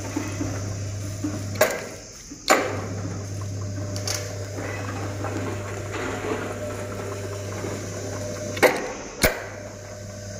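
Electric motor of an automatic rolling shutter humming steadily as it drives the roller chain and sprocket. It cuts out with a sharp click about one and a half seconds in and starts again with another click a second later, then stops and restarts the same way near the end.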